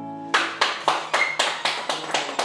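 Hand clapping at the end of a song, starting about a third of a second in and going on at several uneven claps a second. It opens as the last low acoustic-guitar chord dies away.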